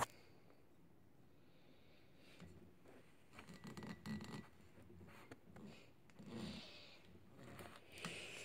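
Near silence with a small click at the start, then faint, irregular rustling and scratching handling noises through the middle and later part.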